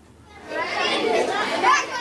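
A crowd of schoolchildren chattering, many young voices overlapping in a steady babble that starts about half a second in.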